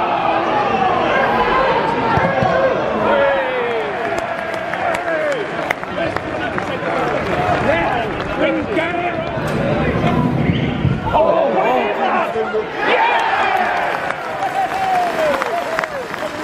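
Football crowd in the stands shouting and calling out during play, many voices overlapping.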